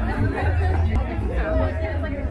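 Chatter of several people talking at once in a crowd of passers-by, with a low rumble underneath.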